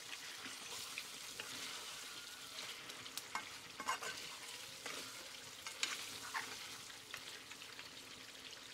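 Pork curry sizzling and bubbling in a black kadai, with a metal spoon stirring and scraping against the pan in a few short clicks.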